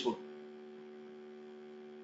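Steady electrical hum in the recording, made of several constant low tones, just after the end of a spoken word.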